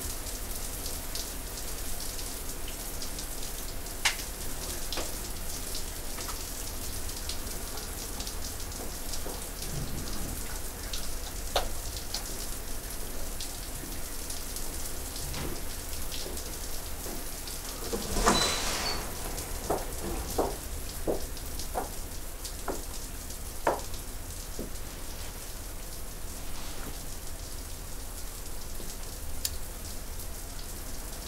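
Steady patter of falling water, with scattered light clicks. About eighteen seconds in there is a louder rustle and clatter, followed by a few small knocks over the next several seconds.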